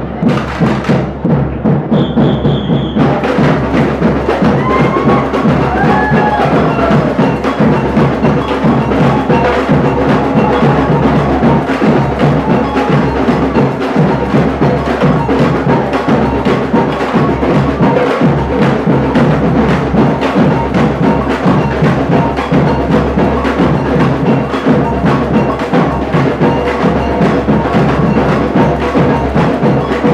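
Samba band drumming: a loud, dense, steady groove of many fast strokes, with deep bass drums under small hand-held drums struck with sticks.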